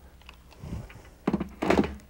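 A dull thunk from a steam iron pressed or set down on a padded pressing mat, with a short voice-like hum near the end.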